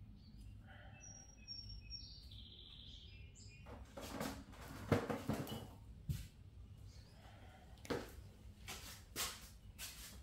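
Faint bird chirps in the background, then rustling and a couple of knocks as someone gets up from a seat at a pottery wheel and moves away, followed by a few short, sharp rattling hits near the end.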